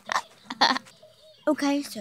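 A young girl's voice without clear words: a couple of short breathy exhalations, then a brief drawn-out voiced sound in the last half second.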